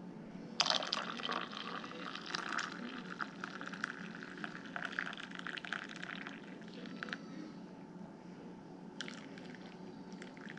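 Hot chocolate poured from a pot into a mug, a splashing stream starting about half a second in and stopping around seven seconds; a second pour into another mug starts near the end.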